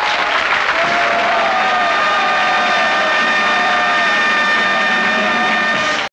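Theatre audience applauding: a dense, steady clatter of clapping that follows straight on from the end of a song, with a thin held high note sounding over it from about a second and a half in.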